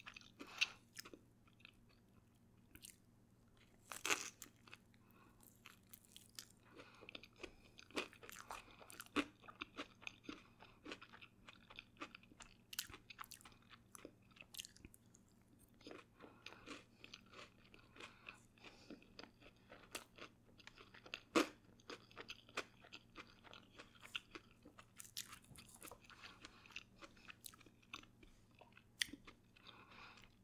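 Soft, close-miked chewing and mouth sounds of a person eating forkfuls of funnel cake with strawberries and whipped cream. Many short, quiet clicks are scattered through it.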